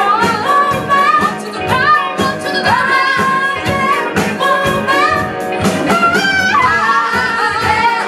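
Live soul band: female singers singing together over a horn section, keyboard and a steady drum beat.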